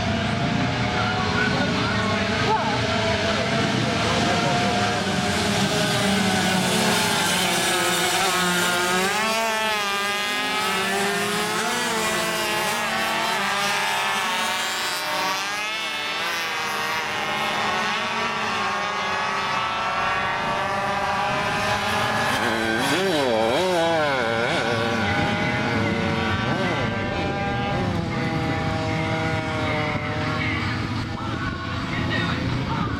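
Small 50cc two-stroke classic racing motorcycles (Cuppers) running past one after another at speed. Their engine notes rise and fall as they accelerate, change gear and go by, with a quick up-and-down wobble in pitch a little over two-thirds of the way through.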